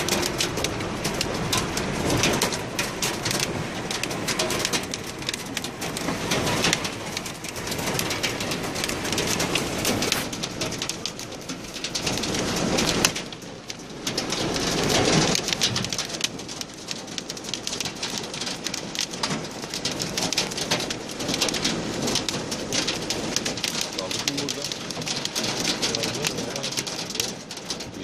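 Hail and rain drumming on a minibus's roof and windscreen, heard from inside the vehicle as a dense, continuous rattle of small impacts, with a brief lull about 13 seconds in.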